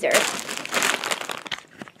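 Clear plastic bag crinkling as it is handled, a dense crackle that dies away after about a second and a half.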